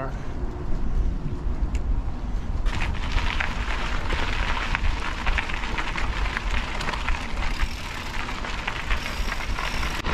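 Mountain bike tyres rolling and crunching over a gravel trail, with wind rumbling on the microphone. The gravel crackle grows denser about three seconds in.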